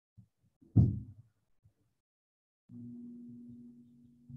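A single loud, dull thump a little under a second in, after a small knock. Then, from well past the middle, a low steady hum with a held pitch.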